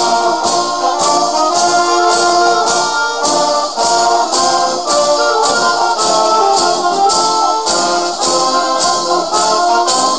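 Philharmonic wind band playing, brass carrying sustained, shifting chords over a steady percussion beat of about two and a half strokes a second.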